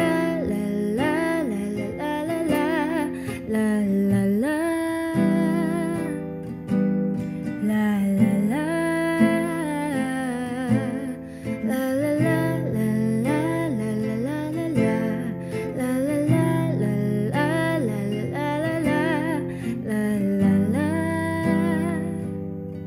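A woman singing a slow Tagalog pop ballad with vibrato, accompanying herself on an acoustic guitar.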